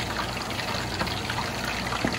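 A wooden spoon stirring a pot of hot buffalo wing sauce, the liquid sloshing and simmering steadily.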